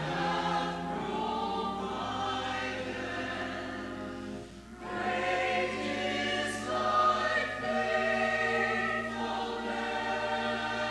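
Mixed church choir singing sustained phrases in parts, with a brief breath break about halfway through before the next phrase.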